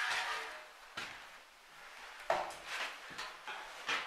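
Irregular footsteps scuffing and knocking on the floor of a small room, about six in a few seconds, the loudest a little past halfway.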